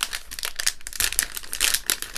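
Plastic foil blind bag of a Lego minifigure crinkling as it is pulled open by hand: a dense, irregular run of crackles.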